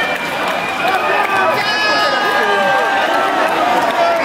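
Concert crowd in a large hall, many voices shouting and cheering at once, with no music playing.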